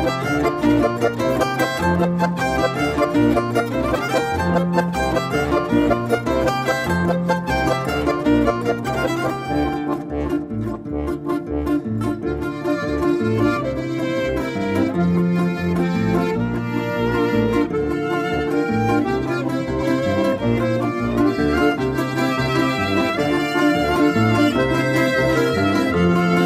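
Violin, zither and Styrian button accordion (steirische Harmonika) playing an instrumental Alpine folk tune, the violin carrying the melody over a steady pulse of accordion bass notes. About ten seconds in the music thins out and softens briefly, then builds again.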